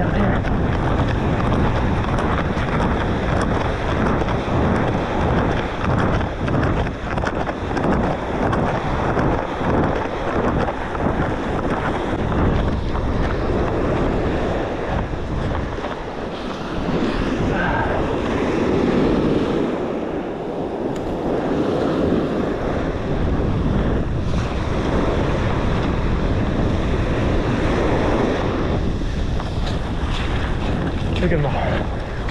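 Wind buffeting the microphone over the wash of small surf breaking on a sandy beach. The low wind rumble eases for a few seconds past the middle, leaving the wash of the waves more to the fore.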